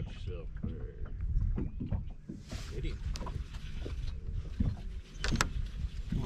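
Water lapping against the hull of a fishing boat, with a continuous low rumble and a couple of sharp knocks near the end.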